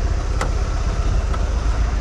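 Small goods vehicle's engine idling, a steady low rumble with a fast even pulse, with a single sharp click about half a second in.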